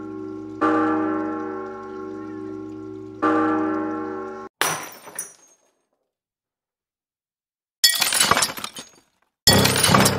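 A deep bell tolling twice, each stroke ringing on for a few seconds. About halfway through comes a short crash. After a few seconds of silence there is a burst of clattering noise, and music starts near the end.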